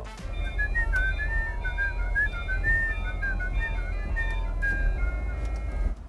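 A whistled tune, its notes sliding up and down, over background music and a steady low rumble.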